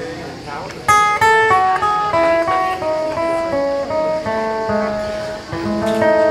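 Acoustic guitar playing a run of single picked notes, starting with a sharp attack about a second in and stepping up and down in pitch, in the closing passage of a blues-pop song.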